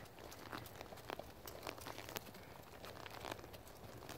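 Faint, soft hoofbeats of a horse moving on arena dirt, a dull tick about every half second.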